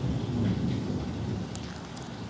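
A low rumble that swells about half a second in and slowly dies away, over a faint steady hiss.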